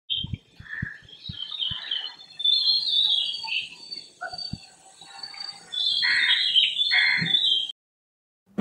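Wild birds chirping and calling, with many short overlapping calls over a faint steady high-pitched drone. The sound cuts off suddenly near the end.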